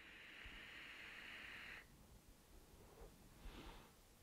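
Faint steady hiss of a draw on an Aspire Atlantis sub-ohm tank, air pulled through its wide-open airflow, cutting off just under two seconds in. A brief faint breath follows near the end.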